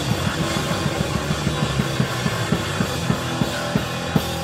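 Hardcore punk band playing live, led by fast, steady drumming with cymbals over a dense wash of band noise, about five hits a second.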